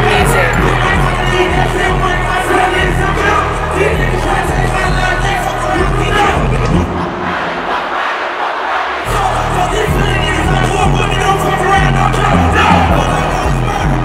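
Live hip-hop concert: a bass-heavy beat over the venue's sound system with a crowd shouting along. About halfway through, the bass drops out for about two seconds, then comes back in.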